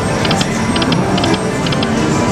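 Wild Leprechaun video slot machine playing its free-games bonus round: steady game music with an electronic reel-spin sound, a quick triple tick repeating about twice a second.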